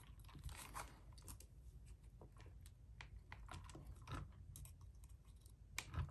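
Faint, irregular clicks and scrapes of needle-nose pliers working a metal suspension hinge pin into a plastic A-arm on a 1/16-scale RC truck.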